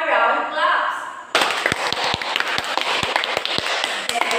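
Applause from a class of students starts suddenly about a second in and keeps going, a dense patter with louder single hand claps standing out close to the microphone.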